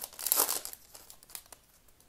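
Foil wrapper of a baseball card pack crinkling as it is pulled open, a run of quick crackles that die away near the end.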